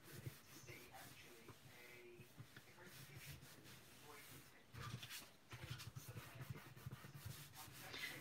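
Faint rubbing and rustling of hands pressing and smoothing a cardstock panel onto a folded card base, with soft paper handling that picks up from about five seconds in.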